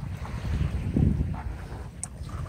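Wind buffeting the microphone over small waves washing onto the sand at the shoreline, the rumble swelling about halfway through.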